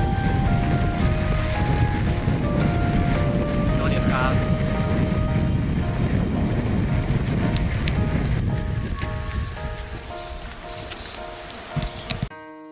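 Wind rumbling over the microphone of a camera mounted on the front of a moving bicycle, with background music over it; the wind noise eases off in the last few seconds.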